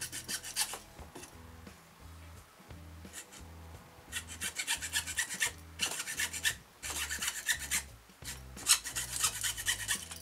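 Screwdriver turning a small metal fitting, with runs of rapid scratchy clicks in about six bursts separated by short pauses.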